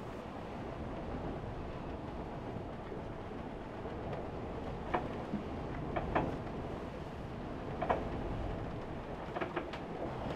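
Fountaine Pajot sailing catamaran under way upwind in rough seas: a steady rumble of the hull and rigging working through the waves, with a few short creaks and clicks from the boat about halfway through and near the end.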